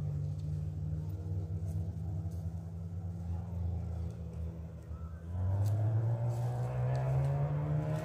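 A racing vehicle's engine runs steadily on a dirt track, then about five seconds in it revs up louder with a steadily rising pitch as it accelerates.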